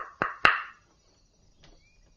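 Knuckles knocking on a door: quick knocks about a quarter second apart, the last the loudest with a short ring. A couple of faint clicks follow about a second later.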